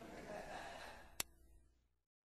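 Faint hiss fading away at the tail end of the song's recording, with one sharp click a little past a second in, then it cuts to dead silence.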